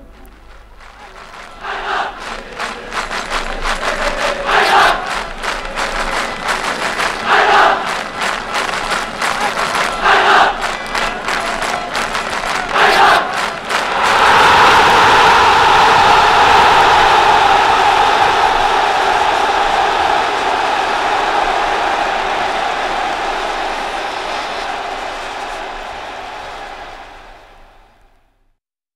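A crowd applauding after a choir's song, with a loud collective shout about every three seconds. About halfway through this swells into sustained cheering that fades away near the end.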